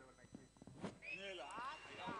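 Faint sharp crack of a cricket bat striking the ball a little under a second in, then faint distant shouts from players and spectators as the ball goes up.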